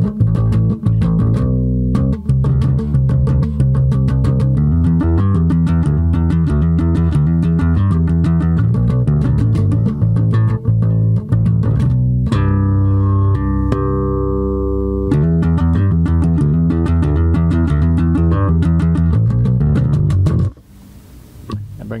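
Four-string Yamaha electric bass guitar playing a rhythmic heavy-metal bass line through an amp, with a few seconds of held, ringing notes about twelve seconds in. The playing stops a little before the end.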